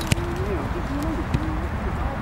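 A man's long, wavering shout from the pitch, with two sharp thuds of a football being kicked, one just after the start and one a little past the middle.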